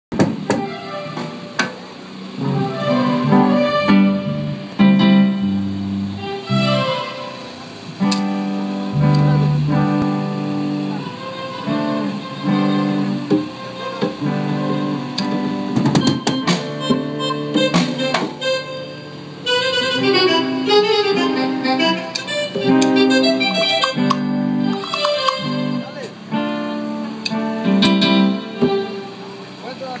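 Small live band playing an instrumental passage on electronic keyboard, electric guitar, congas and drum kit: held keyboard chords over steady sharp drum hits.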